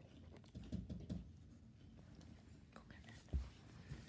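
Faint handling noise of plastic lanyard lace being flipped and tightened in the fingers: small scratchy ticks and rustles, with a dull bump about three seconds in.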